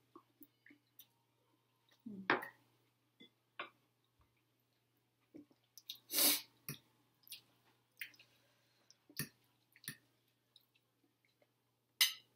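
Close eating sounds: a person chewing and slurping rice noodles and papaya salad, with scattered short clicks of a fork against plates. A louder, short breathy burst comes about six seconds in.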